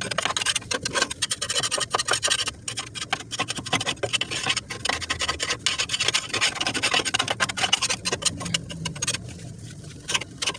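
Rapid, irregular scraping and rubbing strokes against the underside of an eXmark walk-behind mower deck, clearing off caked wet grass that clogs the blades' suction. The strokes ease off briefly near the end.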